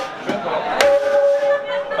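A single strike on the drum kit about a second in, followed by a steady pitched ring that holds for about a second, over background chatter.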